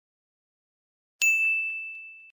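Silence, then a little over a second in a single bright ding chime strikes and rings out, fading over about a second. It is the cue sounded before the next vocabulary word.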